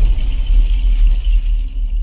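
Sound-design rumble from a channel intro sting: a loud, deep bass rumble under a steady high hiss, easing off slightly toward the end.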